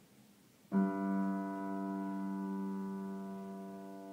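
A piano chord struck once, about three-quarters of a second in after near silence, then left to ring and slowly fade.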